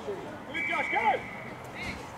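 A single umpire's whistle blast, one steady high note lasting about a second, starting about half a second in, blown to stop play. Shouting voices sound under it.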